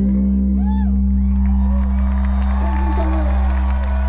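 Live band music over a festival sound system: a deep, sustained bass note holds steady, with whoops and cheers from the crowd rising over it.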